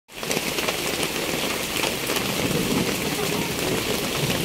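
Heavy rain pouring down in a dense, steady patter, with countless drops ticking on the tarpaulin and sheet-metal awning overhead.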